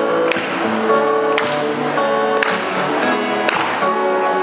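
Acoustic guitar played live, chords ringing on with a fresh one struck about once a second.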